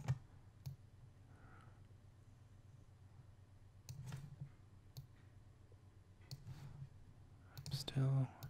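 A handful of short, sharp computer mouse clicks spaced irregularly over several seconds, as objects and keyframes are moved in 3D software, with faint low murmurs from the voice between them.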